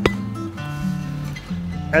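Acoustic guitar background music with steady held notes, and a single sharp knock right at the start.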